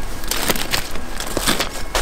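Footsteps pushing through bramble undergrowth and crunching on gravel track ballast: a dense run of short crunches and crackles from stems, leaves and stones underfoot.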